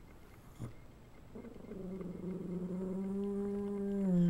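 One long, drawn-out animal call, most likely a household pet, beginning after about a second, holding one steady low pitch and growing louder toward the end.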